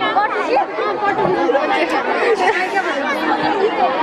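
Several young women talking at once close to a handheld microphone: overlapping chatter with no single clear voice.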